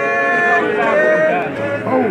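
A Zion church congregation singing together, several voices overlapping on long held, gliding notes.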